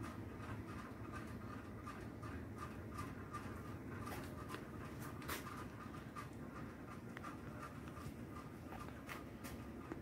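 Faint scratching and small scattered ticks from handling things on a workbench, over steady low room noise, with one slightly louder tick about five seconds in.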